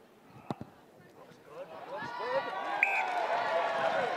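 A rugby conversion kick: a single sharp knock of boot on ball about half a second in, then spectators shouting and cheering, growing louder from about two seconds in as the kick succeeds.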